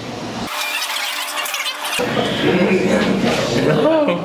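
Voices and laughter sped up into a high-pitched chatter. Near the start the low range drops out for about a second and a half, and lower, normal-sounding voice sounds return partway through.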